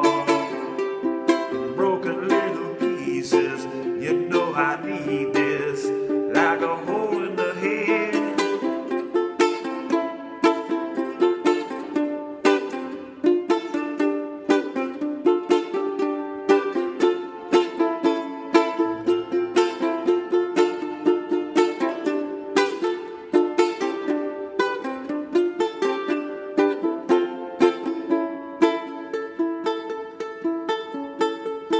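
Kala concert ukulele strummed in steady chords, playing an instrumental passage between sung verses.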